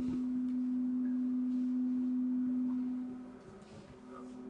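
A steady low tone at one unchanging pitch, like a pure hum, fading away about three and a half seconds in. A fainter, slightly higher steady tone follows near the end.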